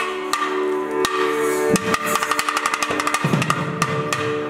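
South Indian temple ensemble of thavil barrel drums and nadaswaram reed pipes: a held reed drone sounds throughout, and from about two seconds in the thavil comes in with a rapid run of strokes.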